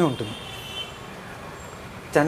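A man's voice trails off in a falling syllable at the start, then a pause with only low, steady room noise.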